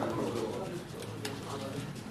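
Indistinct chatter of players around poker tables, with a few sharp clicks of poker chips being handled.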